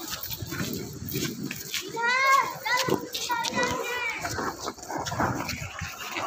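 Background voices on the platform, with a high, wavering call about two seconds in and knocks and rustling from a phone being handled.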